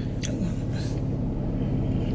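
Steady low hum of a car engine idling, heard from inside the cabin, with a couple of faint clicks near the start as a paper coffee cup is handled.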